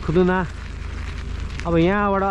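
Steady low wind rumble on the microphone of a camera being carried on a mountain-bike ride. A voice is heard briefly near the start and again in the last moments.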